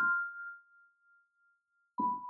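A single bell-like keyboard note from the music rings on and fades away over about a second and a half, then silence until a new note is struck at the very end.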